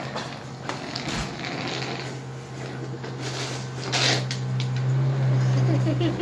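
A child's small plastic rolling suitcase being dragged over concrete, its wheels rattling, with a few sharp clicks. A steady low hum underneath grows louder in the second half.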